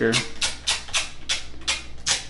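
A dust removal sticker being pressed onto and peeled off a phone's glass screen again and again, making a quick series of short sticky crackles, about three to four a second.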